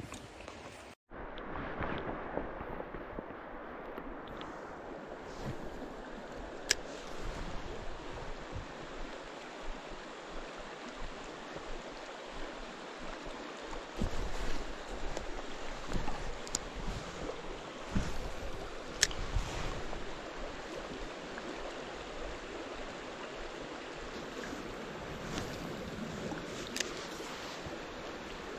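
Shallow creek water running over stones in a steady rush, with a few faint sharp ticks now and then.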